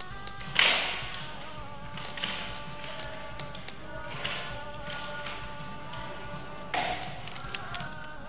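Background music, with two sharp thuds about six seconds apart, the first and louder about half a second in: shots from a spring-powered airsoft sniper rifle.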